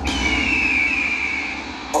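A break in the dance track played over the loudspeakers: one long whistle tone sliding slowly downward over a low bass rumble, with the beat cutting back in at the very end.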